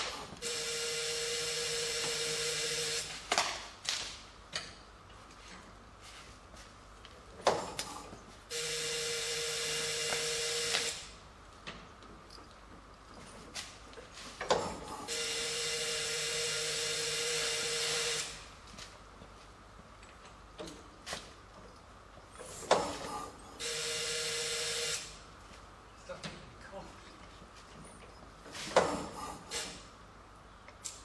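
An electric motor whines steadily in four spells of two to three and a half seconds, turning over the engine of a vintage Dennis fire engine, which does not fire. Sharp knocks come between the spells.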